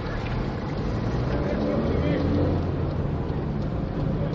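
Steady engine and road noise of a car driving, heard from inside the cabin.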